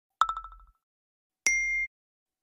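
Two short iPhone alert tones played back: a bright ding that fades quickly in a rapid flutter, then about a second later a brief, higher steady tone that cuts off abruptly.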